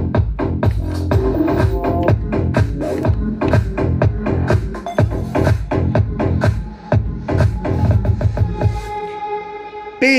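Music with a steady drum beat and heavy bass playing from a Philips NX tower party speaker. About nine seconds in the deep bass drops out, leaving held tones.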